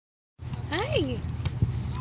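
A single short vocal sound that glides up in pitch and back down, over a steady low rumble, with one click about a second and a half in.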